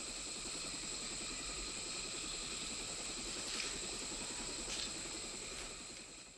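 Steady jungle ambience from a war-film soundtrack, a continuous even hum and hiss with a thin steady high tone, fading out near the end.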